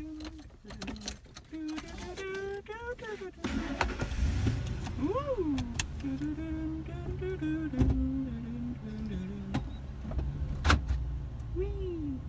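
Ford pickup truck's engine running, heard from inside the cab, with a low rumble that grows louder about three and a half seconds in. Low voices murmur over it, and there are two sharp clicks near the middle and toward the end.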